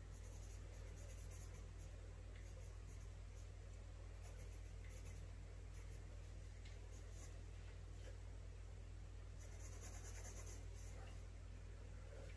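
Pencil scratching on sketchbook paper in short, irregular strokes, faint, over a low steady hum.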